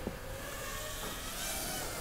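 HGLRC Petrel 132 3-inch toothpick FPV drone flying at a distance, its motors giving a faint whine whose pitch drifts slowly up and down with throttle.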